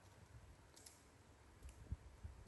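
Near silence, with a few faint clicks and a soft low thump just before the end.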